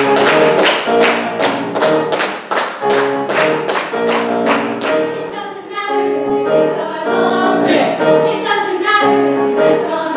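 Show choir singing in harmony, with the singers clapping in time, about three to four claps a second. The claps stop about halfway through and the singing carries on.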